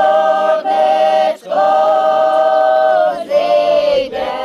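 A group of voices singing unaccompanied. They hold sustained notes with brief breaths between them, the longest note lasting about a second and a half, and the last note falls away near the end.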